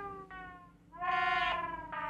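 Korg Volca Keys synthesizer notes, each falling slightly in pitch as it fades. One dies away nearly to silence before another note starts about a second in. Its sound is being altered live from a keyboard's sliders, remapped to the Volca's parameters.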